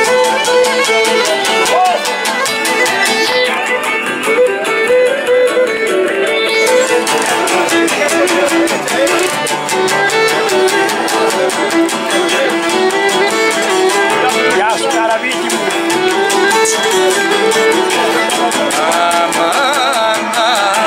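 Cretan lyra playing a dance melody over steadily strummed laouto accompaniment, in an even, unbroken rhythm.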